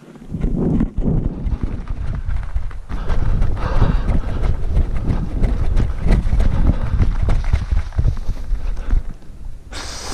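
A person running hard through sugarcane at night: rapid heavy footfalls and rustling and crashing of cane, with a deep rumble of wind and handling on the microphone.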